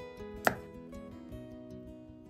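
A single sharp knock about half a second in, over background acoustic guitar music.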